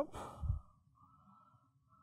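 A man's short sigh-like exhale just after speaking, within the first half second, then near silence: faint room tone.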